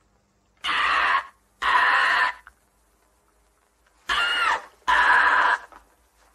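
A bird's harsh screeching calls, four of them in two pairs about three seconds apart, each about half a second long; the third has a rising-and-falling whistle in it.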